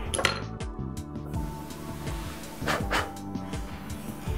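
Soft background music with steady held tones, crossed by a few light clicks or taps, once about a quarter second in and again around three seconds.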